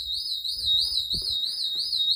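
Shop intruder alarm siren sounding continuously: a high tone that warbles up and down about four times a second. It was set off by a forgotten disarm code and has not been reset.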